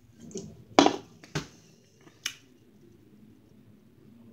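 A drink taken from a glass, then the glass handled and set down: a sharp clink a little under a second in, a duller knock about half a second later, and a lighter click past the middle.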